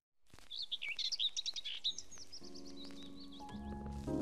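Birds chirping in quick, rising and falling calls. Soft lo-fi hip-hop chords fade in beneath them in the second half and grow louder near the end.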